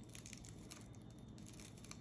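Faint rustling and small scattered crackles of dry pine needles being pressed and worked by hand, as a basket coil is flattened down over the trimmed needle ends.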